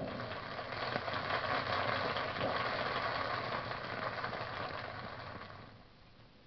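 Live audience applauding after the end of a comic monologue, heard as an old 78 rpm shellac record, fading out near the end.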